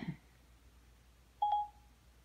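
Siri on an iPad giving one short electronic beep about one and a half seconds in: the tone that signals it has stopped listening to a spoken request. Otherwise near silence.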